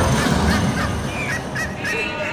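A run of short, bird-like calls, about three or four a second, in the soundtrack between music passages.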